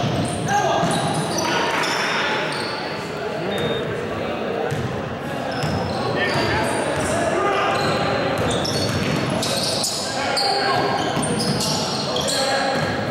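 Basketball dribbled on a hardwood gym floor, with sneakers squeaking and players' voices echoing in the hall.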